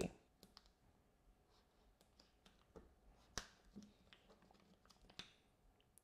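Near silence, then a scattering of faint clicks and paper crinkles from about halfway in: the vinyl decal's backing sheet being peeled away from masking paper transfer tape.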